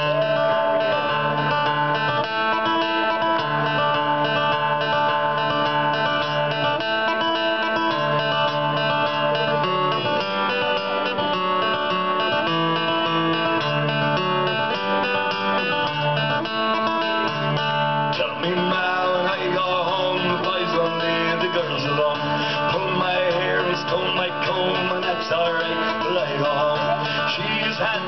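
Live Celtic rock band playing the instrumental intro of a traditional Irish song: strummed acoustic guitars with electric guitar and a moving bass line. The sound grows fuller about two-thirds of the way in.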